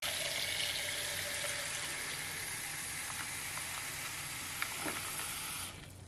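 Kitchen faucet running into a ceramic mixing bowl that holds a wooden butter mold, the water splashing as the bowl fills. The flow is steady and is shut off just before the end.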